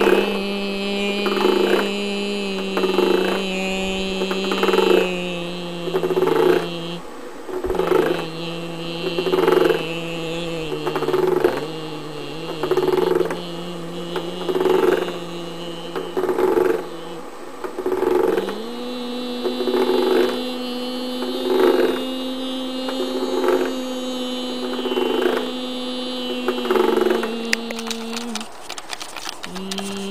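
A woman humming one steady, wordless note, with a rhythmic pulse over it about once a second. The hum breaks off briefly about seven seconds in and again about seventeen seconds in, and comes back on a slightly higher note after the second break.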